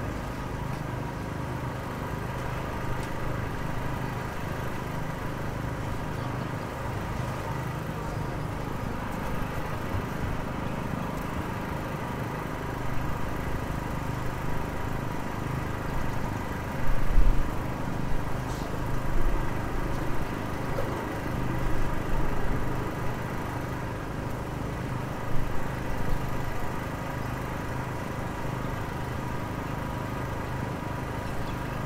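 Street road works: an engine idling with a steady hum. About halfway through, a run of heavy low thumps follows over several seconds.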